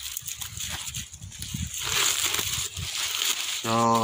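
Rustling and crinkling of cabbage leaves and plastic strapping being handled as a bundle of Chinese cabbage is tied at its base, louder in the second half.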